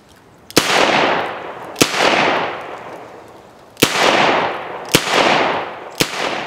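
Smith & Wesson Model 19 .357 Magnum revolver firing four shots of .38 Special 148-grain wadcutter loads, in two pairs about a second apart. Each crack is followed by a long echo that fades out over about a second.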